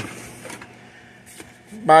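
A quiet pause holding a faint tick and then a single short click about a second and a half in, from the plastic housing of a hang-on-back aquarium filter being handled.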